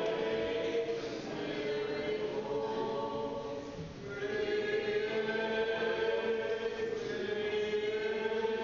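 Church choir singing Orthodox liturgical chant a cappella, in long held notes; one phrase dies away about four seconds in and the next begins.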